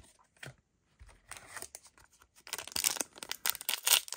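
A foil trading-card booster pack wrapper crinkling and being torn open, the crackle growing denser and louder over the last second and a half. A few light clicks come first.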